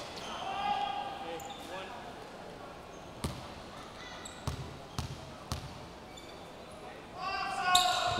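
A basketball bounced about four times on a hardwood court by a player at the free-throw line, the bounces about half a second apart in the middle, over the murmur of a crowd in a gym. Crowd voices rise near the end as the shot goes up.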